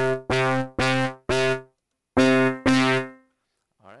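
A software instrument layered in Reason's Combinator plays the same note six times. Four short notes come about half a second apart, then after a pause two more ring out longer and fade.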